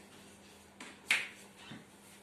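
Two sharp clicks about a third of a second apart, the second much louder, followed by a faint knock, over a faint steady hum.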